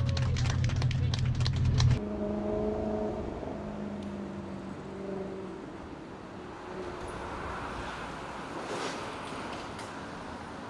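Several people clapping hands over a loud low rumble for about the first two seconds, which stops abruptly. A few held tones follow, then steady street traffic noise.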